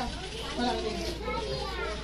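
Background chatter: several people talking at once, with no one voice standing out.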